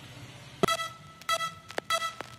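Faint room tone, then from about half a second in a series of short electronic beeps, about four of them at the same pitch. They sound like the opening notes of an electronic music backing track.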